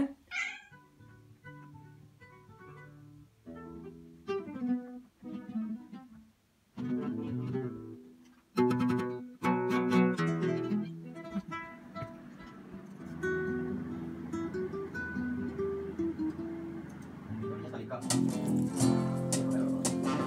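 A cat's short meow at the very start, then guitar playing: single plucked notes picked out slowly at first, growing busier and louder, and a fuller, louder strummed passage near the end.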